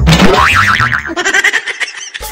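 Cartoon comedy sound effect: a sudden hit and a wobbling boing, then music.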